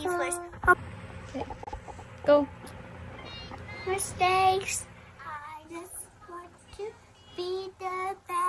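A young child singing in short, high-pitched phrases with pauses between them, the loudest phrase about halfway through.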